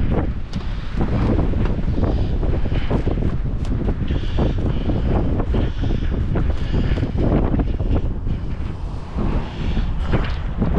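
Wind buffeting a phone's microphone: a gusty, irregular low rumble outdoors on a windy day.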